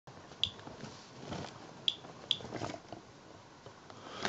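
Inspector Alert Geiger counter clicking on detected counts: three short, sharp high clicks at uneven intervals, one about half a second in and two close together around two seconds. The display reads about 0.2 microsieverts per hour, a level the owner calls really unusual for his area. Fainter soft sounds lie between the clicks.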